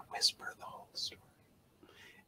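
A man whispering quickly and quietly, in short rushed syllables.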